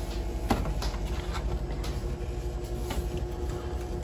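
Duck eggs being set into the plastic cups of an egg-turner tray in a foam incubator: a few light taps and clicks, the clearest about half a second in, over a steady hum.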